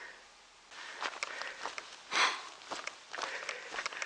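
Hiker's footsteps scuffing and crunching irregularly on a dirt mountain trail while climbing, with his breathing. There is a louder breath about two seconds in.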